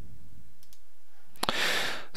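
Steady microphone hiss, then about one and a half seconds in a short mouth click and a quick, loud in-breath by a man drawing breath to speak.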